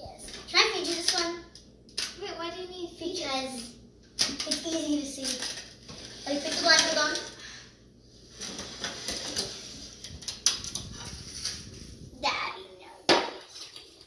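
Children's voices and laughter, then a few seconds of paper napkins rustling with light clicks and taps on a wooden tabletop, and one sharper knock near the end.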